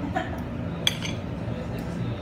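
Steel fork and knife scraping and clinking against a ceramic plate while cutting through a baked empanada, with one sharp clink a little under a second in.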